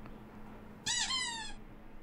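A small dog's single short, high whine about a second in, bending up and then falling in pitch.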